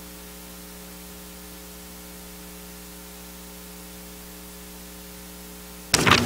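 Steady electrical mains hum with a faint hiss underneath, a low buzzing tone with evenly spaced overtones that does not change. A sudden louder sound starts just at the very end.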